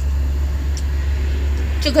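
A steady low machine hum running without change, with a woman's voice starting near the end.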